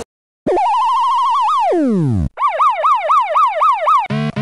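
Synthesized electronic sound effects: after about half a second of silence, a fast-warbling tone rises, then slides down in pitch and cuts off; after a short gap, a siren-like tone sweeps up and down about four times a second.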